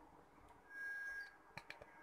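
Wheat flour poured from a plastic bowl into a steel bowl: a faint, soft rush lasting about half a second, followed by a few light taps.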